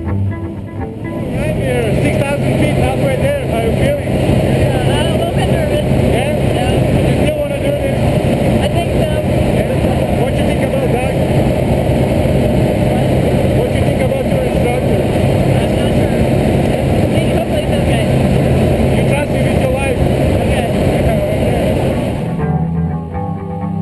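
Loud, steady drone of a jump plane's engine heard inside the cabin, with voices talking over it. The drone comes in about a second in and holds evenly.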